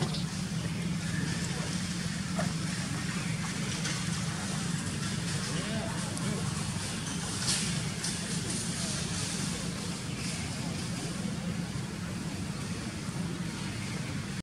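Steady low outdoor hum with faint, indistinct voices in the background.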